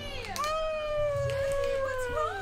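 A high-pitched, drawn-out crying wail from a puppet character's cartoon voice. It slides slowly downward and then wavers near the end.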